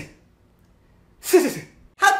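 A man's sneeze-like vocal sound, a sharp hiss over a voice that falls in pitch, about a second and a half in; the tail of a similar one ends right at the start.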